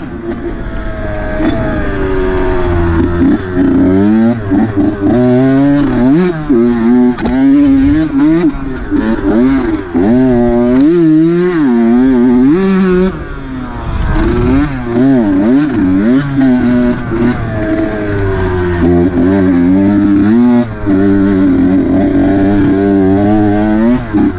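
Dirt bike engine being ridden, revving up and down as the throttle opens and closes, its pitch rising and falling every second or so. About halfway through it eases off briefly before pulling hard again.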